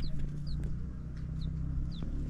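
Young chicks peeping: a few short, high cheeps that fall in pitch, spaced about half a second apart, over a low steady hum.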